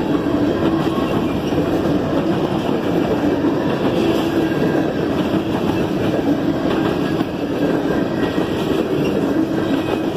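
Covered hopper cars of a CSX freight train rolling past close by: a steady rumble and rattle of steel wheels on the rails.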